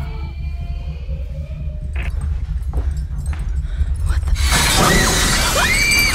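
Horror trailer sound design: a constant deep rumbling drone, a single sharp hit about two seconds in, then a loud harsh rushing burst with swooping, whistle-like tones rising and falling through the last second and a half.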